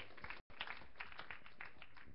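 Faint, scattered applause from a small congregation, with the audio cutting out briefly about half a second in.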